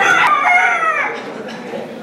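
A fighting cock crowing once, about a second long, its pitch falling toward the end.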